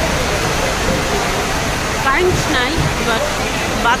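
Steady rushing noise of many wall-mounted electric fans running in a crowded hall, with people's voices talking over it from about two seconds in.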